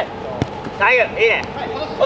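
A ball kicked once on artificial turf, a single sharp thud less than half a second in, followed by players shouting.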